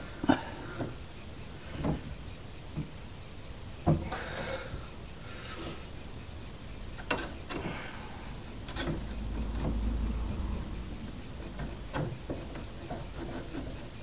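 Hand tools on a car's steering joint: scattered metal clicks and clinks as a spanner and socket are fitted to and worked on the nut, with light handling rustle between them.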